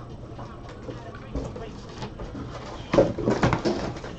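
Rustling and crinkling of shrink-wrapped trading-card boxes being handled, with a burst of crackling plastic about three seconds in.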